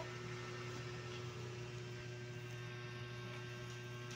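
Steady low electrical hum with a faint hiss: room tone, with no distinct sound from the scissors or box.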